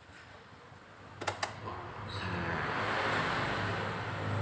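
Two quick clicks about a second in, then from about two seconds the Honda Vario 150 scooter's single-cylinder engine running at a steady idle.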